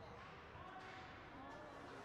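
Faint, distant voices of players and spectators echoing in a large ice arena, with a few faint knocks from play on the ice.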